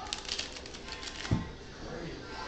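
A deck of playing cards being riffle-shuffled on a tabletop, a quick run of crisp clicking in the first second. A single thump about a second and a half in, the loudest sound.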